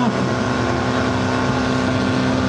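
Portable fire pump's engine running steadily at high speed under load, pumping water out through the hose lines.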